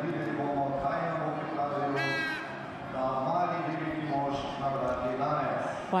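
A man's voice speaking in the arena background, with a brief high-pitched call about two seconds in.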